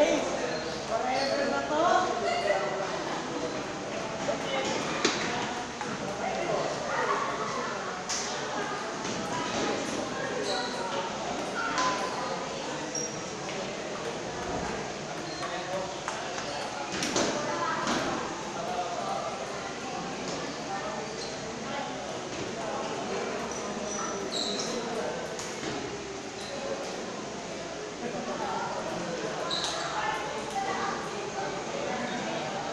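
A table tennis ball being hit in rallies: sharp, scattered clicks of the ball on paddles and table over steady background chatter of voices in a large, echoing hall.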